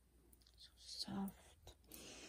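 A woman's voice speaking softly, a brief word about a second in, with a few faint handling clicks around it.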